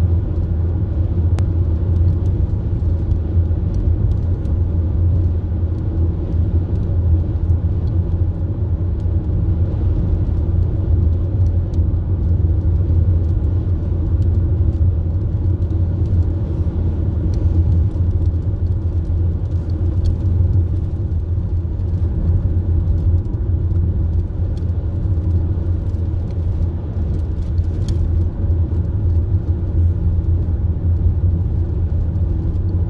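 Steady low rumble of a car driving, heard from inside the cabin: road and engine noise at an even level with no change in speed.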